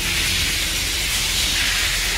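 A steady, high-pitched hiss that starts suddenly and holds even.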